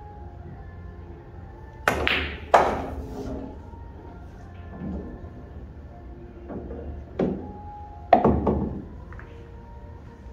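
Cue tip striking the cue ball on a pool table, then a louder ball clack about half a second later. The cue ball then knocks off the cushions several more times, fainter at first, with a sharp knock just after eight seconds.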